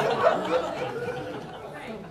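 Several people laughing and talking over one another, loudest at the start and fading.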